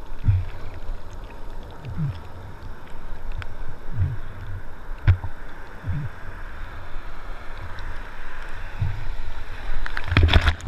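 Surf water sloshing and slapping against a camera held at the surface in shallow whitewater, with low thumps every second or two over a steady hiss of foam.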